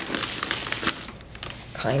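Crushed walnut shell granules rattling and pouring out of a fabric pin cushion as some of the overfilled stuffing is dumped out: a dense run of small crackles that thins out after about a second.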